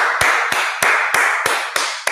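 Hands clapping in applause: sharp, evenly spaced claps about three a second over a continuous hiss of clapping.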